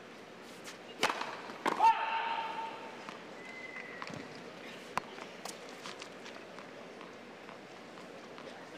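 A tennis serve: the racket strikes the ball sharply about a second in, and a second hit follows a moment later. A loud call, held for about a second, comes right after. Later come a few light single knocks of a ball bouncing on the hard court over steady stadium murmur.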